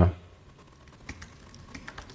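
Typing on a computer keyboard: a scatter of light, quick key clicks, coming more thickly from about halfway in.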